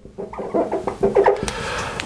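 Marker squeaking and rubbing on a glass lightboard as a word is written, in a few short squeaky strokes followed by a steadier rub.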